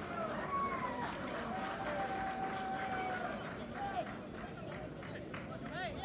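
Voices shouting and calling out around a football ground, several overlapping, with one long drawn-out call about two seconds in.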